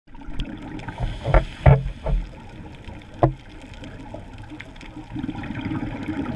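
Muffled underwater water noise picked up through an action camera's housing: four loud gurgling bursts with a low rumble in the first half, then a steady low rush of water from about five seconds in.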